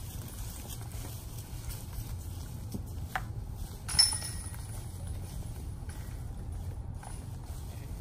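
A disc golf putt striking the metal chain basket about halfway through: one sharp metallic clink with a brief high ring.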